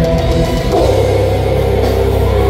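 Extreme metal band playing live and loud: distorted electric guitars, bass and drums, recorded from the crowd. A little under a second in, the low end changes to a fast, even pulse.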